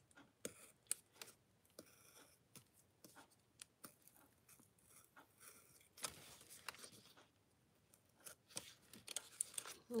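Faint scratching and small clicks of a craft knife blade drawn through black paper, in short irregular strokes as it cuts out the inside of a letter.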